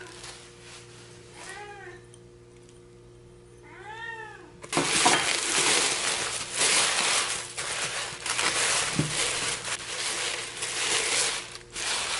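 A cat meows twice, short and then longer. After that comes loud, continuous crinkling and rustling of tissue-paper wrapping as it is pulled off an enamel kettle.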